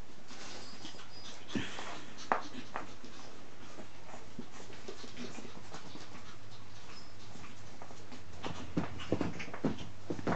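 Shih Tzu puppies playing on a laminate floor: small claw clicks and scrabbles throughout, with short puppy whimpers and yips. The sharpest sounds come about two seconds in and in a cluster near the end.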